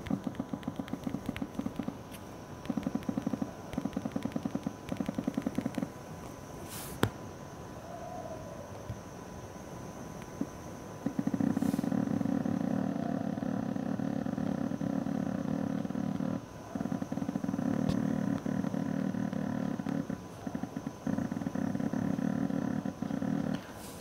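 iQOO 7 smartphone's haptic vibration motor buzzing in rapid ticks, picked up by a lavalier microphone resting on the phone. It comes in short bursts early on as keys are tapped, then in longer runs from about halfway as the alarm-time dial is scrolled, with a couple of brief breaks.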